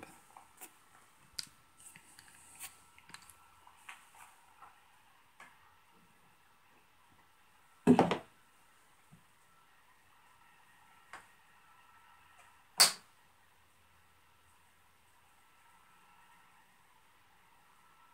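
Handling noises as a straight razor in a small wooden holder is set on a microscope stage: scattered light clicks and taps, one solid knock a little before halfway, and a single sharp click about two-thirds through, over quiet room tone.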